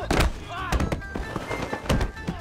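Three heavy impact sound effects of sledgehammer blows landing in a fight, the first right at the start and the last near the end, with shouted cries between them.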